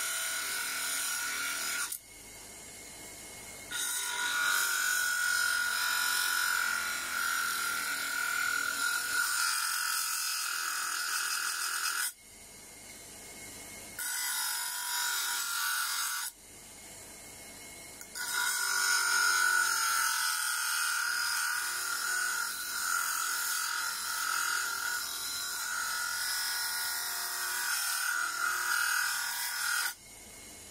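A piece of metal ground against the abrasive disc of a homemade disc sander driven by a washing machine motor, throwing sparks. It makes a steady, harsh grinding sound with a strong high whine. The sound breaks off abruptly three times, for a second or two each.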